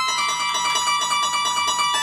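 Harp plucked in a fast repeated-note figure, about six notes a second, over ringing upper strings; the figure shifts pitch slightly just after the start and again near the end.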